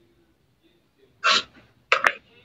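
Two short, sharp bursts of breath from a person, cough-like, about two-thirds of a second apart, picked up by a video-call microphone.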